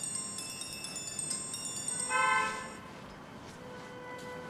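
Chimes: high, bell-like notes struck one after another and left ringing, followed about two seconds in by a brief, louder horn-like tone.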